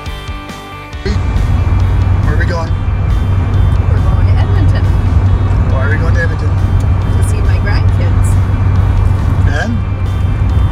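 Guitar music briefly, then, about a second in, a sudden switch to the steady low drone of engine and road noise inside a Ford Super Duty pickup's cab while driving. Short snatches of voice rise over the drone a few times.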